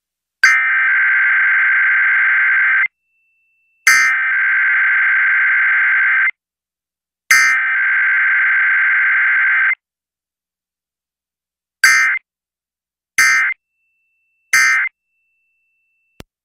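Emergency Alert System SAME digital data bursts for a Required Weekly Test: three long buzzy header bursts of about two and a half seconds each, separated by short silences, then three short end-of-message bursts near the end, with no attention tone between them.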